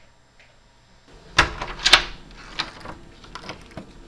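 A run of sharp knocks and clatters, the two loudest about half a second apart, then several lighter knocks, over a low room hum.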